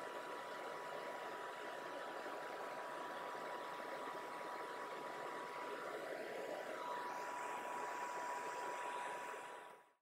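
Hobby spray booth extractor fan running steadily: a whirring hiss with a thin, steady high whine. The sound fades out in the last half second.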